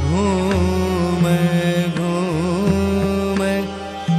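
Pushtimarg haveli kirtan music in raag Malhar: a melody with slides and ornaments over a steady low drone, dipping in loudness near the end.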